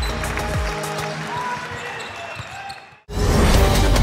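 Basketball game sound: a ball bouncing on the court over arena crowd noise, fading out about three seconds in. Then loud music with a fast, driving beat cuts in abruptly.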